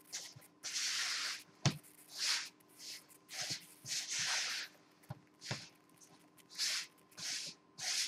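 Spatula strokes scraping and turning crumbly pie-crust dough in a mixing bowl: a series of short rasping strokes, roughly one a second, with a sharp knock against the bowl near two seconds in.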